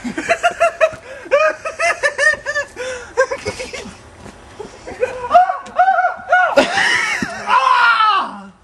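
Hearty laughter in quick, rhythmic ha-ha bursts, breaking into a louder, high-pitched shriek of laughter near the end.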